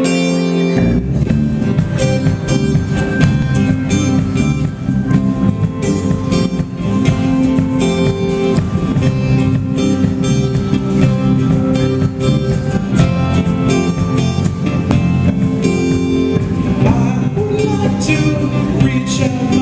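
A live band playing: two strummed acoustic guitars, joined about a second in by electric bass and a drum kit keeping a steady beat. A voice comes in near the end.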